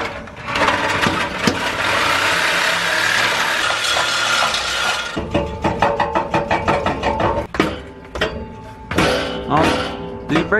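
A reciprocating saw cuts through a truck's exhaust pipe for about the first five seconds, then stops. Background music with a steady beat runs under it and carries the rest.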